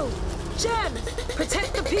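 Cartoon sandstorm sound effects: a steady low rush of wind with a rapid ticking patter of flying sand and debris in the second half, under short startled cries.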